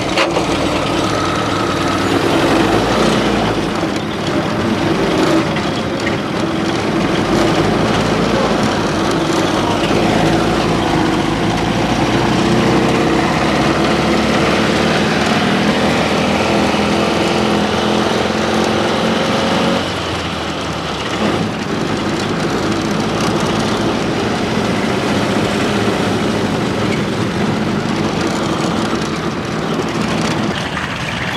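TKS tankette's engine running steadily, its pitch creeping up for a few seconds midway and then dropping back about twenty seconds in.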